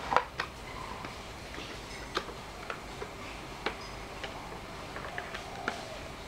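Clear plastic packaging tray being handled, giving a scattered run of light, irregular clicks and taps, the sharpest just after the start.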